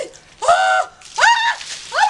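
A woman's high-pitched squeals, three short ones, as she braces for a bucket of ice water.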